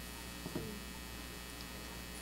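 Steady low electrical mains hum, with a faint short noise about half a second in.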